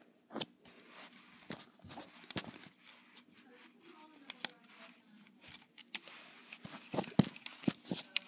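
Irregular light clicks and taps of rubber bands and a hook working over the pins of a plastic Rainbow Loom, with a couple of sharper clicks near the end.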